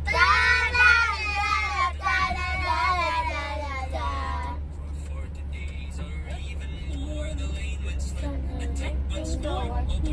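Girls singing along loudly until about four and a half seconds in, then only fainter voices and music. A steady low rumble from the moving van runs underneath throughout.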